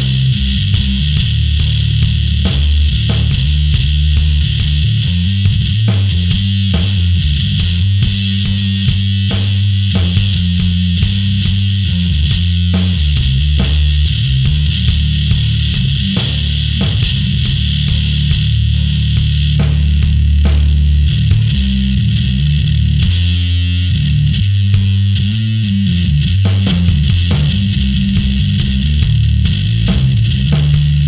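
Fender Precision bass played through a Conan Fuzz Throne fuzz pedal into a Darkglass amp: heavily distorted low riffs with a thick fuzzy hiss on top. Some notes are picked in quick runs, others are held for several seconds.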